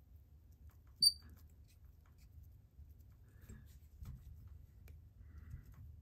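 A single brief high-pitched squeak about a second in, over faint low room noise.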